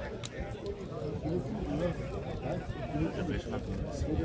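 Spectators chatting indistinctly beside the pitch at an outdoor amateur football match, with no clear words.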